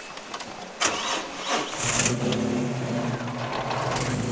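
A rally car's engine being started: a short spell of cranking, then the engine catches a little under two seconds in and settles into a steady idle.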